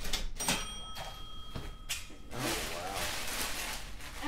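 Thin black plastic trash bag crinkling and rustling as hands dig through it, starting a little past halfway. Earlier, a faint steady high ringing tone sounds for about a second and a half.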